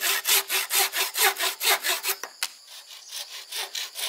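Hand saw cutting green bamboo in quick, even back-and-forth strokes, about five a second. A little past halfway the strokes break off with a sharp click, then carry on softer and more spaced.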